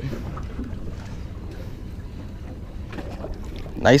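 Steady low wind rumble and water noise around a small boat at sea, with a few faint scattered clicks.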